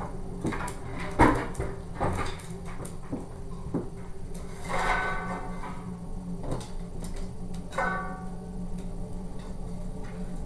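Paper and sticks being handled and loaded into a metal rocket heater's feed opening: several knocks and clunks in the first few seconds, then two short squeaky scrapes about five and eight seconds in.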